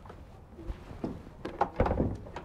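A yacht's transom hatch to the crew quarters being released by its push-button latch and swung open. A small click comes a little way in, then a quick cluster of knocks and a thunk near the end.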